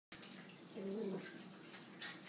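Miniature schnauzer making one short low vocal sound about a second in, amid scuffling noises from the play-wrestling.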